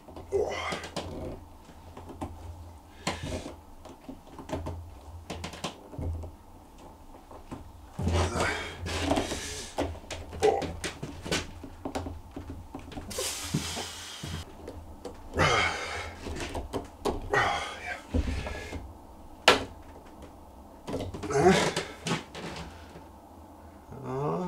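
Shop-made wooden clamps with threaded steel rods being cranked tight on a glued-up board: irregular knocks, clicks and scraping of wood and metal, with one sharp knock about 19 seconds in.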